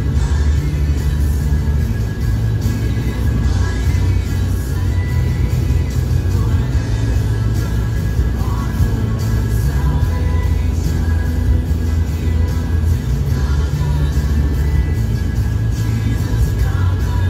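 Music playing over the low, steady rumble of a car in motion, heard from inside the cabin.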